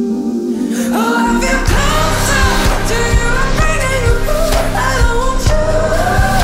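Pop music soundtrack. A held tone gives way about a second in to a singing voice, then a steady drumbeat and bass come in.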